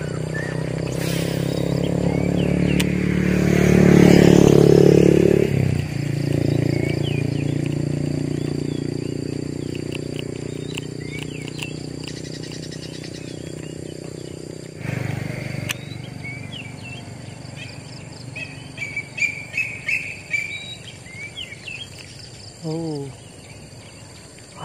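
A motor vehicle passing on the nearby road: a steady engine hum swells to its loudest about four seconds in, drops away suddenly, then fades out over the next ten seconds. Small birds chirp in the quieter second half.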